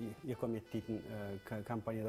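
A man's voice talking, in short bursts of a few syllables each.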